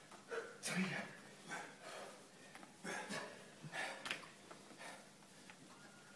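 Heavy breathing and short grunts from men straining through kettlebell Turkish get-ups, with several hard exhalations in the first few seconds that then ease off.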